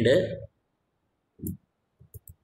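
A man's voice finishes a word, then after a pause there is a single short click about one and a half seconds in, from the computer he is working at.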